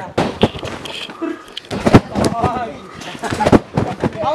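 Irregular sharp thwacks of people bouncing and landing on trampoline beds, two of them loud, with voices in between.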